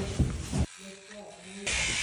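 An electric toothbrush switches on near the end and runs with a steady, high buzzing hiss.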